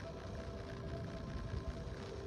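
Faint background music of steady held notes over a low rumble of street traffic.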